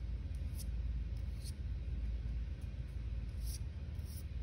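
Several short, faint strokes of a bundle of paint-dipped conifer needles brushing and dabbing on paper, over a steady low room hum.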